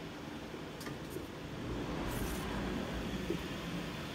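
Steady indoor room noise with a low hum, typical of ventilation, and the machining centre standing idle. A few faint clicks come about a second in, and a brief hiss at about two seconds.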